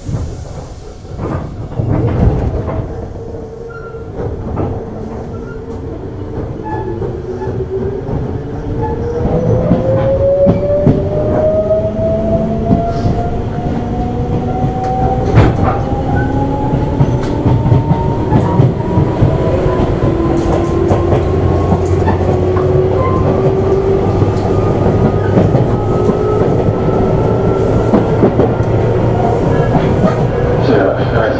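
Tobu 8000 series electric train motor car pulling away and accelerating: after a thump at the start, its traction motor and gear whine climbs steadily in pitch while it grows louder, over a running rumble and wheels clacking on the rails.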